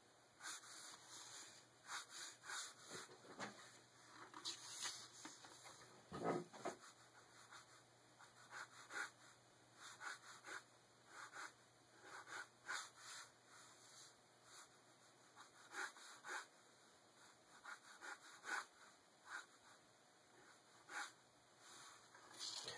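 Ballpoint pen stroking across paper: faint, scratchy strokes in an irregular run of one or two a second, with one duller, lower rub about six seconds in.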